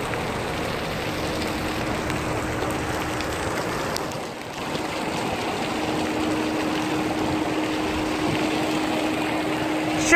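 Steady rushing noise of splash-pad water jets spraying on an open ship deck, with a constant hum underneath. The noise dips briefly about four seconds in.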